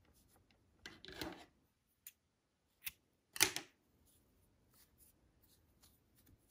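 Faint small handling sounds of yarn work, with a short scissors snip cutting the yarn; the sharpest and loudest sound comes about three and a half seconds in.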